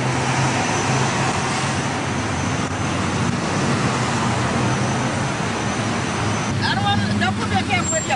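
Steady road traffic noise: an even rush of passing vehicles over a low engine hum, with voices starting faintly near the end.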